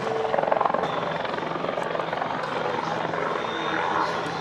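Eurocopter Tiger twin-turboshaft attack helicopter in flight overhead, its rotor beating in a steady rapid chop over the engine noise.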